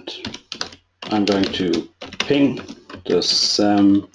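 Computer keyboard typing: a quick run of key clicks, with a man's voice talking over them.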